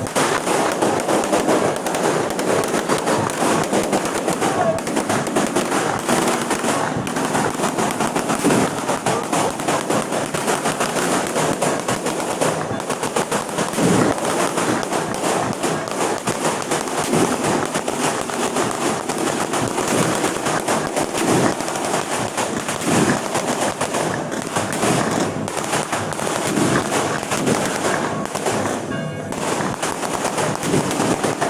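A fireworks display going off in a dense, continuous crackle of rapid bangs.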